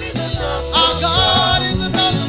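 Live gospel worship music: voices singing over a band with a steady bass line and drums.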